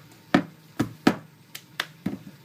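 Cup-game percussion: hand claps and a plastic cup knocked and tapped on a tabletop, about five sharp hits in an uneven rhythm.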